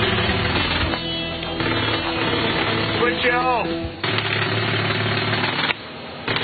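Pneumatic jackhammer hammering into the ground in a rapid steady stream of blows, breaking off briefly near the end.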